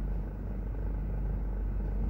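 Steady low rumble of a car's engine and running gear heard from inside the cabin as the car creeps forward.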